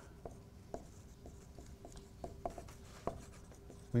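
Marker writing on a whiteboard: a string of faint, short strokes and taps as letters are written out.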